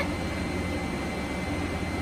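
Steady fan whoosh of the fibre laser setup's cooler and running equipment, with a low hum and a faint high whine underneath.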